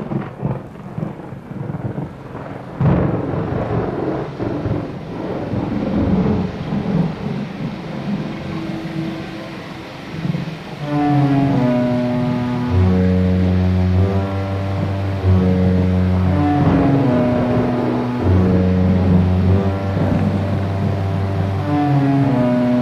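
Thunderstorm sound effects: steady rain with rolling thunder and a sharp crack about three seconds in. About halfway through, a slow tune of long held notes over a deep steady bass note comes in on top.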